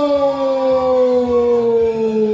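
One long drawn-out howl from a single voice: a held note that glides slowly down in pitch.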